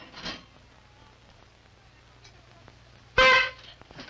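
A horn blown once, one short loud honk near the end, used as a wake-up call.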